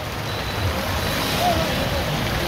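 Heavy rain and the wet road heard from inside an open three-wheeler rickshaw in a downpour: a steady hiss of rain and tyre spray that slowly grows louder, with the vehicle's low rumble beneath.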